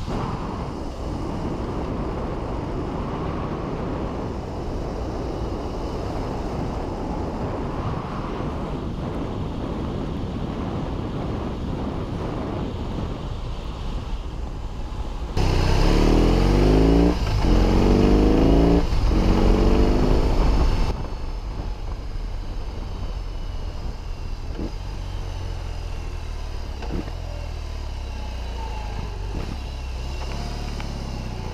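BMW R18's 1800cc boxer twin carrying the motorcycle along at riding speed, with a steady rush of road and wind noise. About halfway through it gets much louder and the engine revs up through the gears, its pitch rising and dropping back twice at the upshifts. For the rest it runs at a low, even rumble at slow speed.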